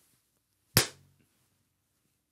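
A single sharp hand clap, about three quarters of a second in, with a brief room echo.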